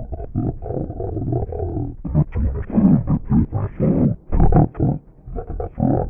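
Cartoon characters' shouted dialogue run through a heavy audio effect that lowers and distorts the voices until the words can't be made out. There is a loud low thump about four seconds in.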